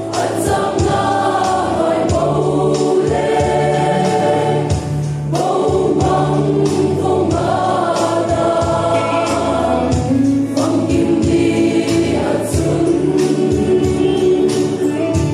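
Mixed choir of women and men singing a gospel hymn in full voice, with percussion hits keeping a beat underneath.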